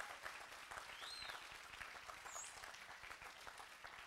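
Audience applauding: a steady patter of many hands clapping, held at a moderate level throughout.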